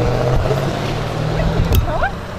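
A car engine running steadily at the roadside, a low even hum, with a second engine tone that stops near the end.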